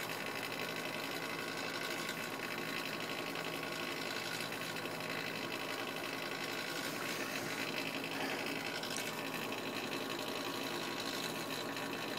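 Hot-air rework station's blower running steadily: an even whir of air with a constant hum, blowing hot air onto a circuit board chip to melt the solder beneath it before removal.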